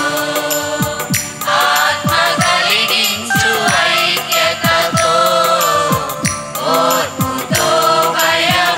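A group of women singing a devotional song together into microphones, over an accompaniment with a steady, even percussion beat.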